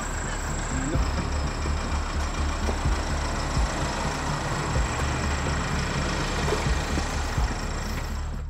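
A parked ambulance's engine idling steadily, with irregular low thumps from the handheld microphone being carried.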